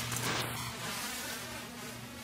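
A low, steady electrical hum with a hiss, and a brief rustle of a nylon jacket being handled at the collar near the start.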